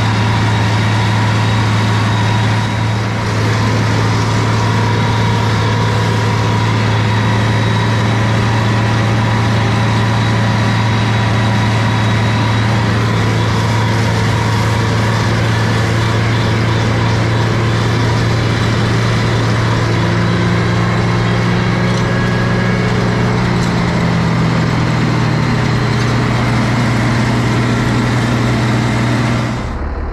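Farm tractor engine running steadily at a constant speed, with a Kuhn FC 4000 RG mower conditioner hitched behind. The steady drone goes unbroken until it cuts off suddenly at the end.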